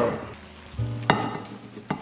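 Hot stainless steel pan of lo mein still sizzling just off the heat, with two sharp knocks, about a second in and near the end, as the ceramic serving plate is set down and the pan meets it. Soft background music underneath.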